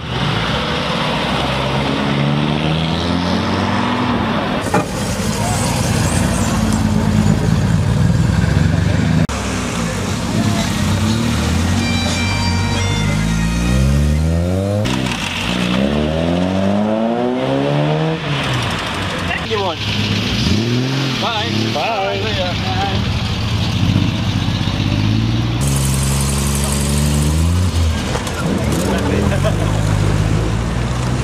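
Classic car engines pulling away one after another, among them a jeep and a Triumph TR7. Each engine revs up and changes gear, its pitch rising and dropping repeatedly.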